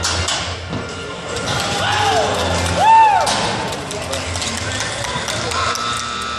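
Background music and voices in a large arena, with two short rising-and-falling yells about two and three seconds in, the second the loudest.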